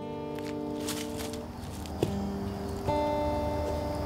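Quiet acoustic guitar intro: picked notes left ringing, with new notes coming in about two seconds in and again near three seconds.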